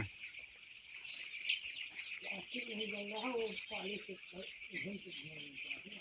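A flock of eight-day-old chicks peeping together in a continuous high-pitched chorus of many small overlapping chirps.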